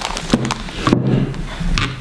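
A few short clicks and knocks of small plastic supplement vials being handled and put down on a wooden table, over a steady low hum.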